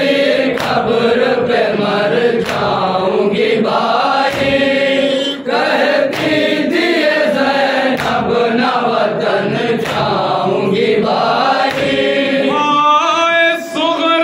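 Group of men chanting a noha (Shia lament) together, led by one voice on a microphone, with chest-beating (matam) strikes about once a second. Near the end the lead singer's voice rises out clearly above the group.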